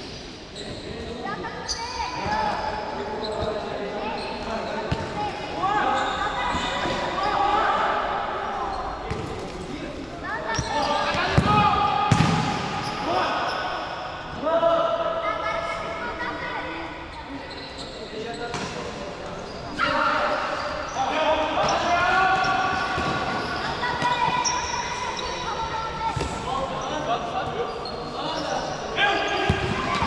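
Futsal players calling and shouting to each other across an echoing indoor court, with the thud of the ball being kicked now and then, loudest about eleven seconds in and near the end.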